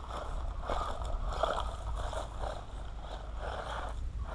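Small electric RC truck driving over gravel a short way off, its motor and tyres rising and falling in quick surges.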